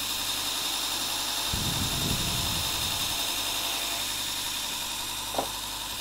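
Robert Sorby ProEdge belt sharpener running steadily with a buffing mop fitted, while a bar of honing compound is pressed against the spinning mop to load it. A low rubbing sound swells for about a second partway through, and there is a short click near the end.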